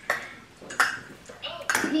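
Small plastic shot cups set down on a hard tabletop: several sharp clicks, the first right at the start and the last near the end.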